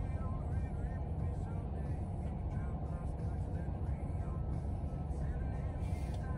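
Car engine idling, a steady low rumble heard from inside the cabin, with faint voices and music in the background.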